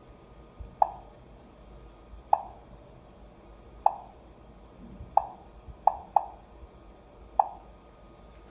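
Seven short key-press beeps from the HOMSECUR H700 alarm panel's touchscreen as menu buttons are tapped. Each is a brief pitched blip that dies away quickly. They come at uneven intervals, three in quick succession a little past the middle.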